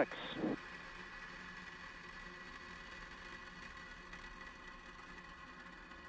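Falcon 9 rocket engines just after liftoff, heard faintly through the launch webcast feed as a steady rushing hiss with a faint whine.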